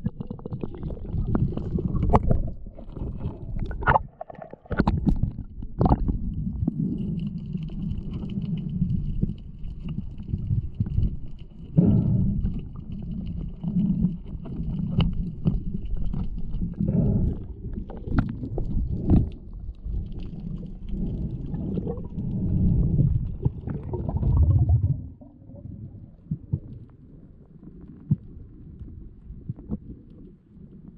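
Muffled underwater rumble of water moving past a diving camera, with scattered clicks and knocks as a free-diving spearfisher swims down holding a speargun. A faint steady high whine sounds for several seconds partway through, and the rumble eases off near the end.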